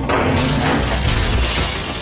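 Glass shattering, a loud crash of breaking glass, over dramatic score music.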